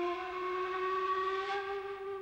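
Film score music: a single long, breathy woodwind note in a traditional Japanese style, held with a slight upward bend in pitch.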